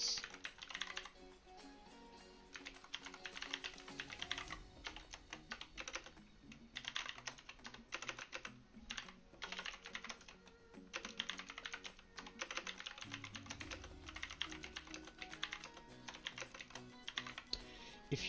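Typing on a computer keyboard: runs of quick key clicks in bursts with short pauses, over soft background music.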